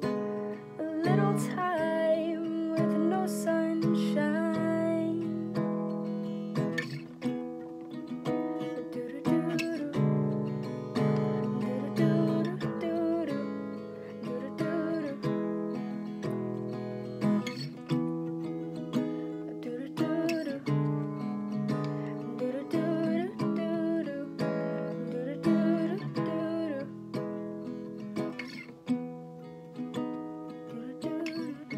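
Acoustic guitar strummed in a steady rhythm, chords ringing, playing out the end of a song, with a voice singing wordlessly over it in places.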